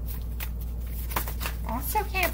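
A deck of tarot cards being shuffled by hand: a few short, crisp strokes of card against card. A woman's voice starts near the end.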